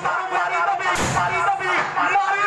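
A man's voice declaiming through a stage microphone and loudspeakers, with one sudden loud bang about a second in.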